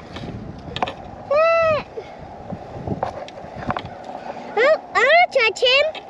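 A child's high voice calling out without words: one drawn-out rising-and-falling call about a second and a half in, then a quick run of short rising calls near the end.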